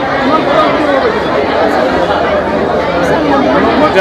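Speech and crowd chatter: many voices talking at once.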